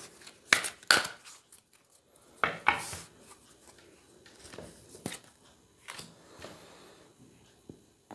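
A deck of tarot cards being shuffled by hand: soft rustling of the cards broken by several sharp snaps at irregular intervals.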